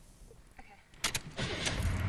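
A diesel truck running on home-brewed biodiesel started with the ignition key: a couple of sharp clicks about a second in, then the engine catches and runs low and steady.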